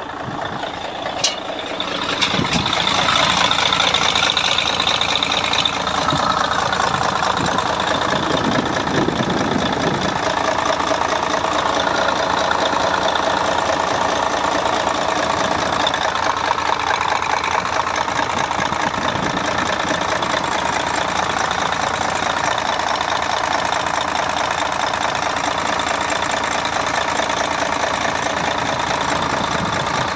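Mercedes-Benz Actros truck diesel engine idling steadily after a fresh engine-oil and filter change, run to check the service. It gets louder about two seconds in, then holds steady.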